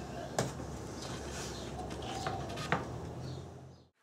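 A few light wooden knocks, three sharp taps in all, as mitered cedar trim boards are laid into place and butted together at the corners, over a steady low background. The sound fades out near the end.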